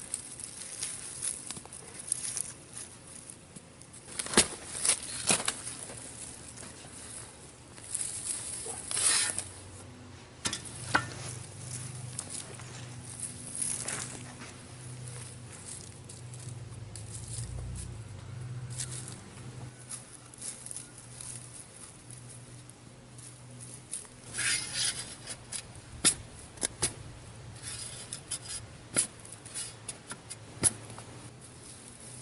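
Bare hands digging and sifting through dry, crumbly garden soil to pull potatoes out, with irregular rustling scrapes and small clicks of clods and stones. A faint low drone runs through the middle part.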